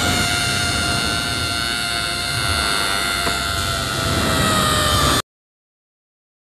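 A loud, harsh held tone over a hiss, sinking slightly in pitch, that cuts off abruptly after about five seconds: a gag sound effect.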